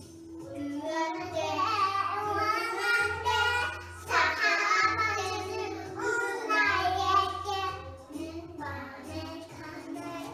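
Children singing a song over a musical backing with a bass note that repeats about once a second, in sung phrases a second or two long.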